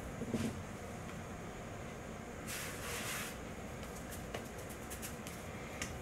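Quiet kitchen room tone with faint handling sounds: a soft knock just after the start and a brief brushing about two and a half seconds in, from hands working a ball of potato gnocchi dough on a floured wooden counter.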